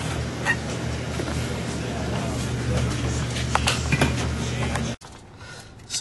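Steady low hum of a car heard from inside the cabin, with a few faint clicks and knocks. About five seconds in, the sound cuts off abruptly to a much quieter background.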